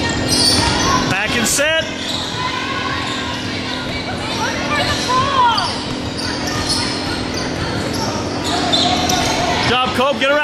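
Basketball game on a hardwood gym court: a ball bouncing and sneakers squeaking in quick bursts, about a second and a half in and again near the end, over the echoing voices of players and spectators.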